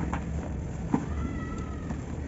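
Soft, dry cement chunks crumbling and breaking apart in the hands, with crumbs and dust falling, and a sharp crunch about a second in. Over it, in the second half, a short, thin, high-pitched tone lasts under a second.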